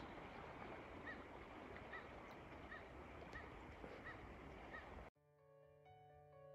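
Faint outdoor ambience with a bird repeating a short call, about two to three times a second. Soft background music comes in about five seconds in.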